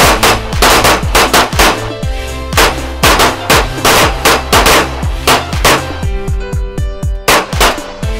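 Pistol shots fired in quick uneven strings, several a second, over background music.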